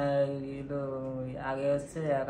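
A man's voice drawing out a long, steady vowel for over a second, then starting a second drawn-out sound near the end, more like a slow chant than ordinary talk.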